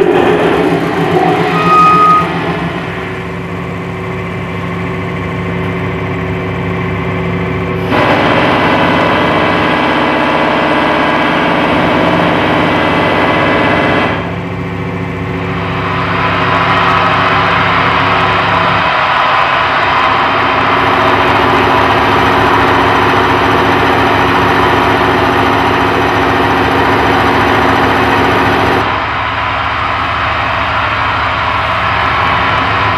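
Dense electronic drone music: layered steady tones over a loud noisy bed, changing abruptly in blocks every few seconds.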